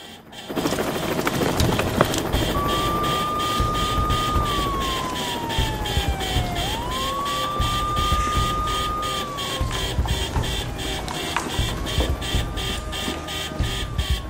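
Emergency siren wailing in slow cycles over a dense low rumble. Three times, starting about two seconds in, it rises quickly, holds a high note for about two seconds, then slides down.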